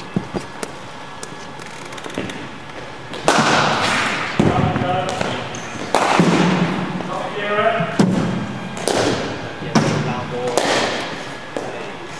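Four sharp knocks of cricket balls being struck and hitting the nets, each ringing on in the large hall, with faint voices in between.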